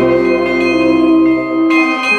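Bells of a truck-mounted travelling carillon ringing, played from its console together with a musical ensemble. A held chord breaks off just before the end.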